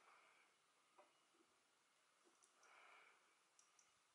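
Near silence, with a few faint clicks from a metal crochet hook working yarn.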